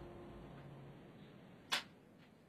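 The tail of the dance music fades out into quiet room tone, then one sharp click sounds near the end.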